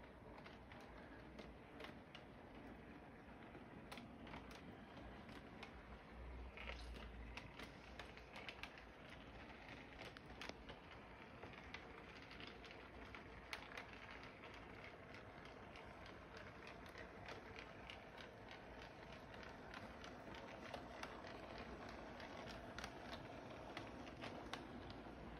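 Toy electric train, a three-rail diesel locomotive pulling a boxcar, running around its track: a faint steady motor whir with irregular light clicks from the wheels on the rails.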